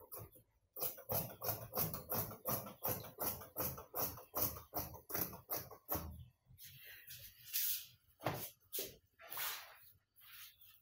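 Scissors cutting through trouser fabric in quick, even snips, about four a second, slowing to a few scattered, rougher strokes after about six seconds.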